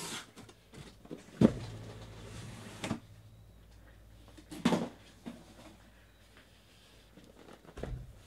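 Cardboard shipping case being opened and handled: flaps pulled open and cardboard boxes knocked, slid and set down on a table. There are several knocks and thumps, the loudest about a second and a half in, with scraping of cardboard just after it.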